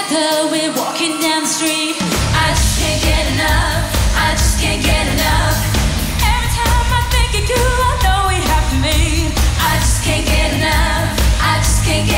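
Female pop vocal group singing live over a band. The heavy bass end of the music kicks in about two seconds in.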